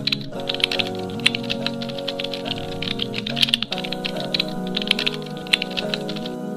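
Keyboard typing sound effect: a fast, uneven run of key clicks over background music with held notes.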